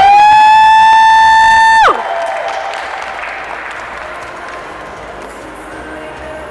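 A woman's amplified singing voice holds one long high note for about two seconds, sliding up into it and dropping away at the end. Audience applause follows and fades.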